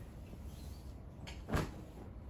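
A single sharp knock about one and a half seconds in, over a low steady background hum.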